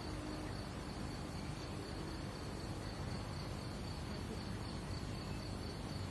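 Field crickets chirring steadily in a high, thin continuous band over a low, even outdoor rumble.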